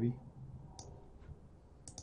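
Computer mouse button clicks, two or three short sharp ones about a second apart, over a faint background hum.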